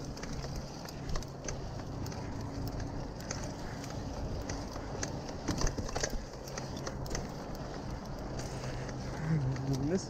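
Mountain bike rolling down a dirt singletrack: steady tyre noise on the trail and a low hum, with scattered clicks and rattles from the bike over bumps.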